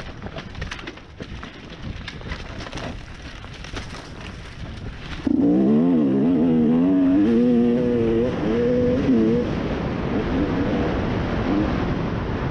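Dirt bike engine on a trail ride. For the first five seconds it runs quietly under scattered clicks and rattles. About five seconds in it opens up loudly, its pitch wavering up and down as the bike accelerates, then keeps running loud and steady.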